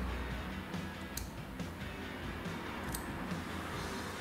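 Faint background music, with two sharp snips of barber's scissors cutting moustache hair, about a second in and again about three seconds in.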